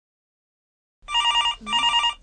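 Silence, then about a second in a telephone rings: two short, rapidly warbling electronic rings in quick succession.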